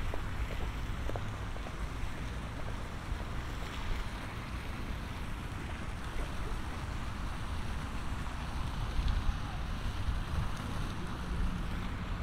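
Wind buffeting the microphone outdoors, a gusty low rumble over a steady background hiss of open-air ambience.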